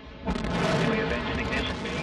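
Antares rocket's two RD-181 first-stage engines igniting at liftoff. A sudden loud onset about a quarter second in is followed by a steady, dense rumbling roar.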